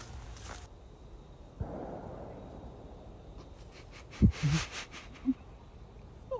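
A single sharp bang about four seconds in, much louder than anything else, followed by a short laugh.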